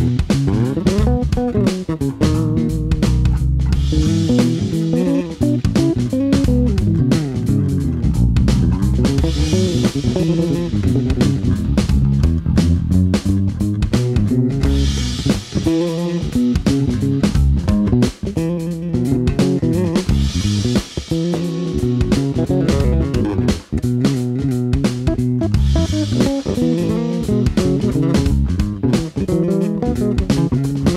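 Four-string active electric bass, a Chowny SWB Pro, played fingerstyle in a busy solo line of quick plucked notes.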